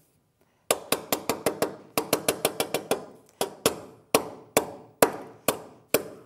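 Hammer striking annealed copper sheet down into a metal V-block to crease it: sharp taps with a short ring, starting under a second in. The taps come in quick runs of about eight a second, then slow to two or three a second.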